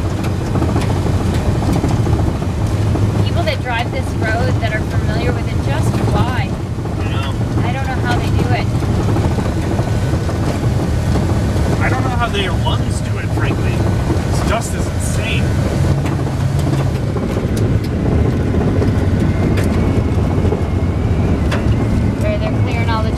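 Steady low road rumble inside a van's cabin while driving on a gravel road: tyres on loose gravel and the engine's drone.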